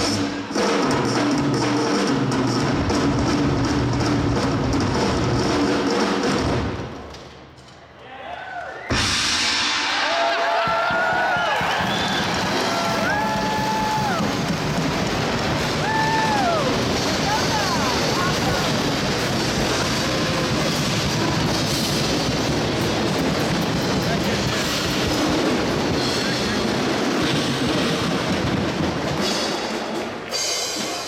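Rock drum kit solo: fast, dense drumming with cymbals that drops away for a moment, then a sudden loud crash. Shouting, whooping and applause from the crowd follow.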